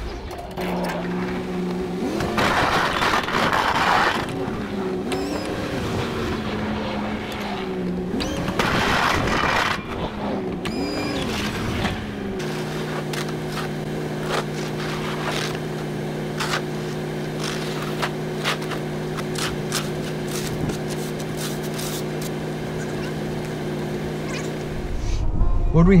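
Chevy 3500HD pickup engine revving up and down as the truck works a V-plow back and forth through driveway snow, with two louder rushes of snow being pushed by the blade. About halfway through the engine settles into a steady idle, with faint clicks.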